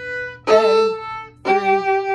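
Violin played slowly, separate sustained bowed notes: a soft note fades, a new one starts about half a second in, and a third, lower note starts about a second and a half in and is held.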